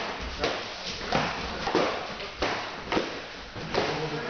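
Sport-sword sparring, shield against sword: an irregular string of sharp knocks, about seven in four seconds, as the sword strikes the round shield and the blades meet.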